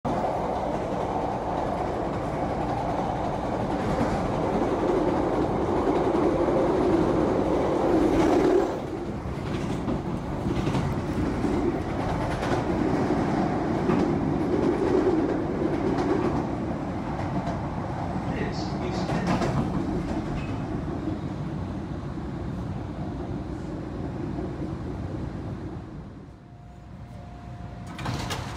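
A train running on rails: a steady rumble with scattered wheel clicks and rattles. It drops abruptly in level about nine seconds in, then eases off slowly.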